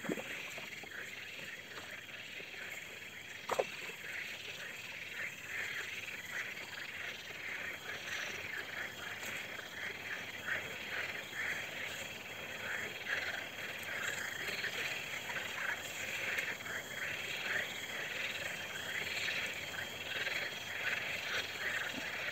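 A chorus of frogs croaking from the reeds: a dense run of rapid, repeated calls that grows fuller after the first few seconds. A single short falling chirp sounds about three and a half seconds in.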